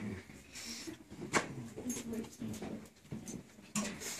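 Classroom noise of children moving about and murmuring softly, with a single sharp knock about a second and a half in.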